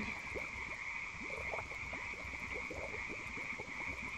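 Background ambience sound effect: a steady high-pitched chirring, with many small quick pops or blips scattered through it.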